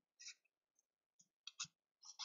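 Faint clicks and light taps of baseball trading cards being handled and set down on a table: one about a quarter second in and two close together near the end.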